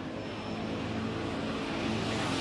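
A motor vehicle's engine running on the street, its pitch rising slightly as it grows louder toward the end.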